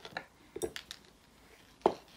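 A small metal rolling pin being rolled and handled over soft clay on a board: a few light clicks, then one louder knock near the end.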